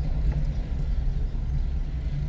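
Car driving along a road: a steady low rumble of engine and tyre noise.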